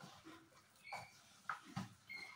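Hands squeezing and mixing sliced onions into gram-flour batter in a steel bowl, heard as a few short, soft squelches and rustles, with a brief faint ring about halfway through.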